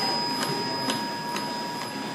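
Automatic plasticine packaging machine running, with a regular click a little more than twice a second over a steady whine and mechanical noise.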